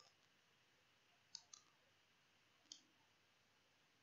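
Near silence, broken by three faint, short computer clicks: two close together about a third of the way in and a third about two-thirds through.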